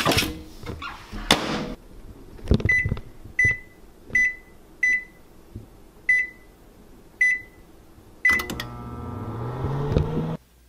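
Microwave oven being loaded and started: knocks and a clatter as a plate goes in and a thud about two and a half seconds in, then seven short high keypad beeps at uneven intervals as the time is entered. About eight seconds in the oven starts running with a steady low hum.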